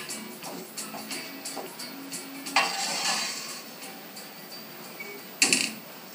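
Roasting pan sliding into an oven over its metal racks, with scraping and rattling, then a sharp bang as the oven door shuts about five and a half seconds in. Soft background music underneath.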